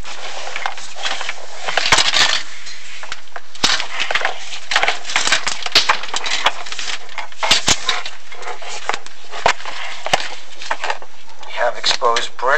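Inspection camera and its cable rubbing and knocking against the masonry flue walls as the camera moves down the chimney: an irregular run of scrapes and clicks over a steady hiss.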